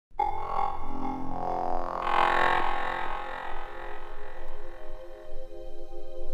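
Opening of a progressive house track: sustained electronic synth pads and drone with no beat, swelling about two seconds in, then settling into a steady held chord.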